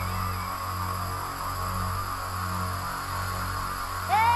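A quiet, drumless breakdown in an electronic breakbeat mix: a low bass drone pulsing on and off under a hissy haze. A melodic line fades out just after the start.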